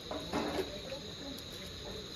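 Crickets trilling steadily, a thin continuous high-pitched tone.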